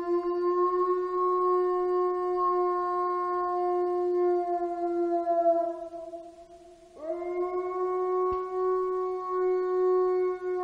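Wolf howling: one long, steady howl that fades out about six seconds in, then a second howl that sweeps up sharply at about seven seconds and holds.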